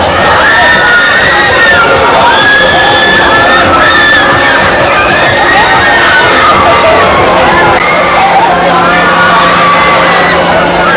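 Many riders screaming and shouting together on a spinning fairground wheel ride, with long, overlapping high-pitched screams one after another.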